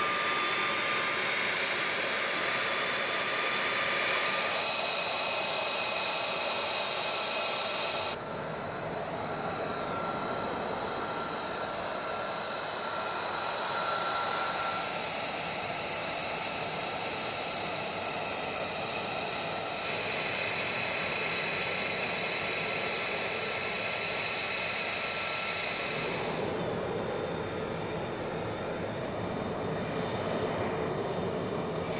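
F-35B Lightning II's Pratt & Whitney F135 jet engine running at ground idle and taxi power: a steady rush with high, steady whining tones. The sound changes abruptly several times.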